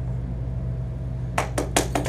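A steady low room hum, then a small audience starts clapping about one and a half seconds in.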